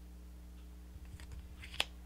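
Tarot card being set down into a spread of cards: a few faint rustles, then one short sharp click of card against card near the end.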